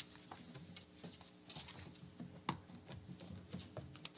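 Scattered light clicks and taps over a faint steady room hum, with one sharper click about two and a half seconds in: small handling noises of laptops and phones in a quiet room.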